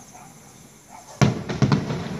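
An aerial firework bursts with one sharp bang a little over a second in, followed by a quick run of crackling reports.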